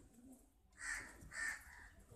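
Two short, harsh cries about half a second apart.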